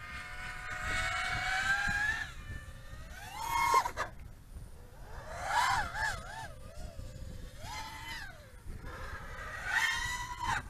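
HGLRC Sector 5 V3 quadcopter's 1900 kV brushless motors and propellers whining in flight on a 4S battery. The pitch rises and falls with the throttle: a slow climb at first, short climbs after that, and a wavering stretch in the middle.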